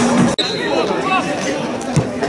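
Electronic intro music cuts off abruptly about a third of a second in. Voices of players and spectators calling and chattering at an outdoor football match follow, with a short high whistle note just after the cut.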